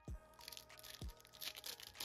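Foil wrapper of a Pokémon booster pack being torn open and crinkled by hand, in short irregular crackles with a couple of soft knocks.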